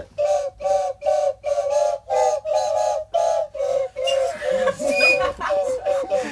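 A group of plastic toy whistles played together in two parts: short notes in a steady rhythm, about two or three a second, on two close pitches. The rhythm breaks up in the last two seconds.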